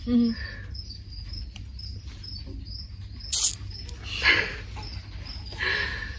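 Faint, evenly repeating high chirps, a few a second, like an insect chirping. There is one short sharp hiss about three seconds in and two softer breathy rushes later.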